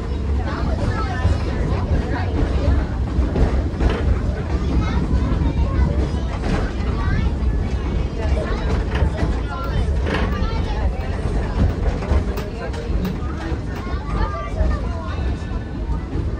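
Passenger train car rolling along with a steady low rumble and wind on the microphone, under indistinct chatter of passengers throughout.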